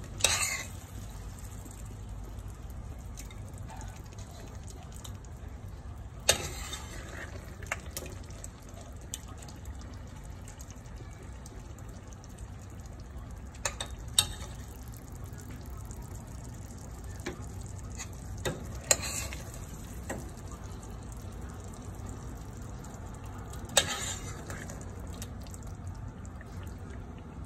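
Metal spoon stirring a thick pork and chili stew in a stainless steel pot, with occasional sharp clinks of the spoon against the pot, about six in all, over a steady low hum.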